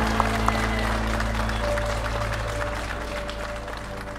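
Guests applauding, the last few claps in the first second, then the applause thinning out under music of sustained chords over a deep bass note.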